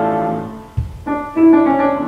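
Grand piano accompaniment to a Russian romance: a soprano's held note fades out in the first half second. Then a low bass note sounds, and piano chords follow at about a second in.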